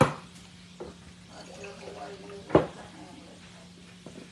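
Two sharp knocks of kitchenware, one right at the start and a second about two and a half seconds in, with a lighter tap between them, over a faint steady hum.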